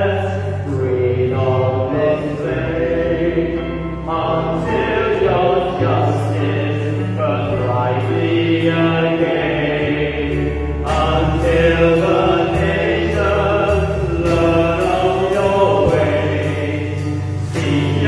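Congregational worship song sung by two voices into microphones over sustained low bass notes. A steady ticking beat joins past the halfway point.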